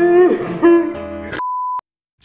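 Music that cuts off abruptly about a second and a half in, replaced by a single short, steady electronic beep lasting under half a second, then silence.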